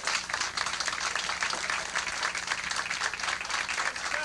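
Audience applauding with dense, steady clapping, and some laughter at the start.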